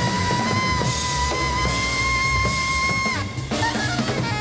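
Jazz quartet playing live: the alto saxophone holds one long high note for about three seconds, then lets it fall away, over piano, upright bass and drum kit.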